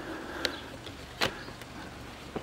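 Footsteps on dry ground: two short, sharp steps just under a second apart over a faint outdoor background.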